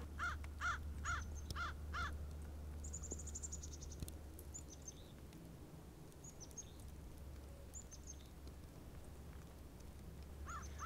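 A crow cawing repeatedly, about two caws a second, dying away after about two seconds. Faint high chirps of small birds follow.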